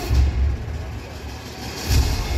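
Pregame intro music played loud over an arena's sound system: a deep bass hit just after the start, the bass dropping away in the middle, then a loud hit near the end as the music comes back in.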